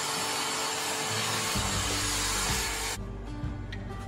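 A handheld corded power tool running with a loud, even whirring noise, which stops abruptly about three seconds in, over background acoustic guitar music.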